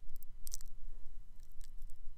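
A few faint, scattered clicks over a low steady hum.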